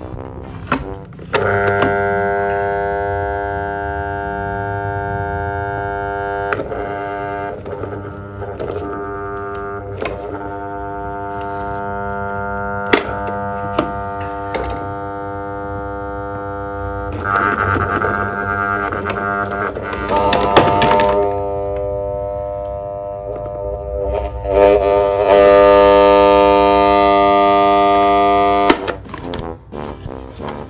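Green plastic desk fan's electric motor giving a loud, steady buzzing hum. It starts sharply with a click after about a second and a half, turns louder and hissier near the end, then cuts off suddenly with a click. Light clicks and knocks are scattered through it.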